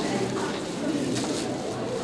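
Indistinct murmur of voices with room noise, no clear words.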